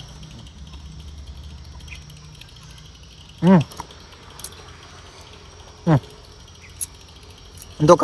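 A man hums an appreciative "hmm" twice, about three and a half and six seconds in, each falling in pitch, while eating the fruit. Faint steady insect noise runs under it.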